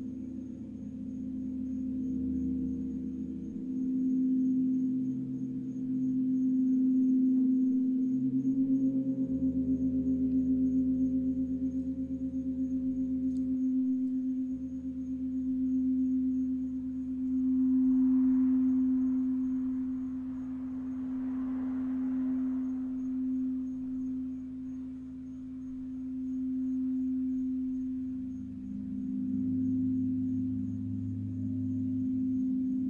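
Crystal singing bowls sung with a mallet circling the rim: a strong steady ringing tone that swells and fades, over several lower sustained gong and bowl tones. A soft wash of noise rises for a few seconds past the middle.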